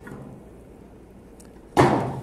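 Faint background hiss, then near the end a single loud metallic clank as the coal-covered cast iron Dutch oven lid is lifted off with a lid lifter and set down on the metal table.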